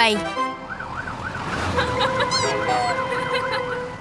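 Cartoon fire truck siren sound effect, a fast rising-and-falling wail repeating about three times a second, with steady held tones joining partway through.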